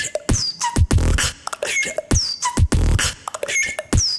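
Solo beatboxing: a mouth-made beat of deep bass kicks and sharp clicks, with a high whistled sound that falls in pitch several times.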